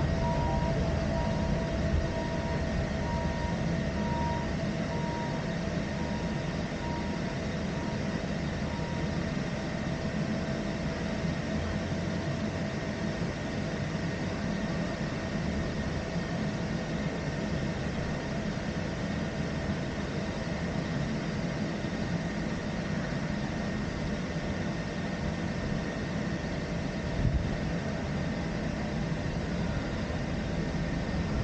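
Peak Tram funicular car running down its track, heard from inside the car: a steady rumble, with a faint pulsing high tone over the first ten seconds or so and a single short knock near the end.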